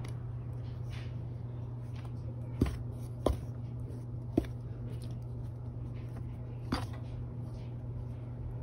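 Chicken being dredged in flour in a stainless steel bowl, with four sharp knocks against the bowl as the excess flour is tapped off, about two and a half, three, four and a half and seven seconds in. A steady low hum runs underneath.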